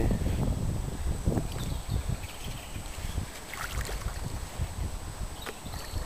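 Wind noise on the microphone, with a hooked carp splashing briefly at the surface near the end.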